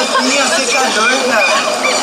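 Several people's voices overlapping in loud, unbroken chatter, too jumbled for any words to stand out.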